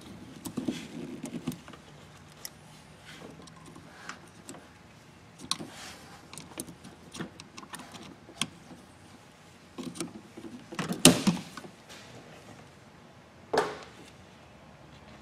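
Plastic wiring-harness connectors being worked loose and unplugged by gloved hands: scattered clicks, small rattles and rustling. The loudest clatter comes about eleven seconds in and another sharp knock just before the end.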